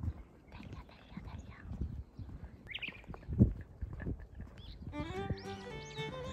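Footsteps on a paved road, an irregular run of low thuds with one heavier thud about three and a half seconds in, and a brief high chirp just before it. Background music with strings and guitar comes in about five seconds in.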